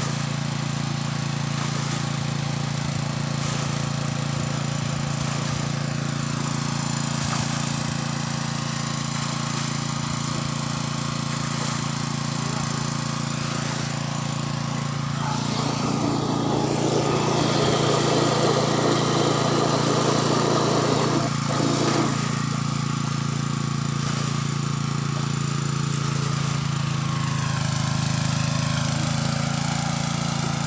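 Small engine-driven water pump running steadily, with a constant low drone, as the pool is pumped out. A louder rushing noise joins between about 15 and 22 seconds in.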